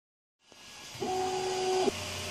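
3D printer running: a steady fan hiss fades in, and from about a second in a steady stepper-motor whine from the moving print head joins it, stopping abruptly just before the end.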